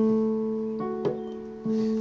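Yamaha portable keyboard on a piano voice playing a slow left-hand broken D-chord pattern: one note rings at the start, and two more single notes are struck, one a little before the middle and one near the end, each held and ringing on. A light click falls just after the middle.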